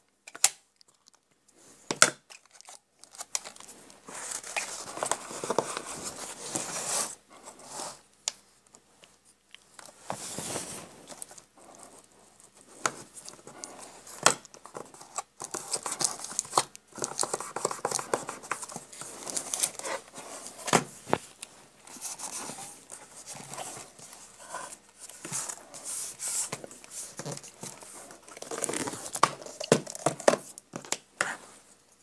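Paper rustling and crinkling in irregular bursts as hands press and smooth decoupage paper onto a ring binder, with a few sharp clicks and knocks in between.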